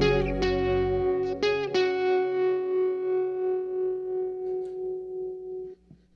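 Background music: a final guitar chord of the soundtrack song rings out with an even pulsing wobble, fading slowly, then stops abruptly near the end.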